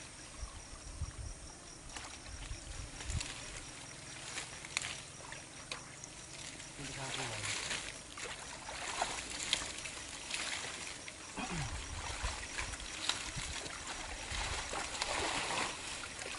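Muddy water sloshing and splashing, with plant stems and leaves rustling, as people wade and grope by hand through a pond thick with water hyacinth. The splashes come irregularly and grow busier in the second half.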